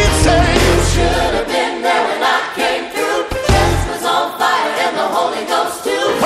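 Gospel choir and congregation singing with band accompaniment, a low bass line and a beat under the voices.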